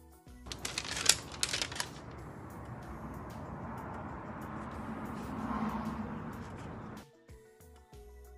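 A sheet of paper rustling and crinkling as it is handled, loud and crackly for about a second and a half. It is followed by several seconds of softer, steady rustling that cuts off abruptly near the end.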